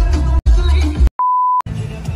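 Dance music with a heavy, regular bass beat cuts off about a second in, and a single steady beep of about half a second follows: the end-of-countdown beep of a film-leader style intro. Outdoor background noise comes in after it.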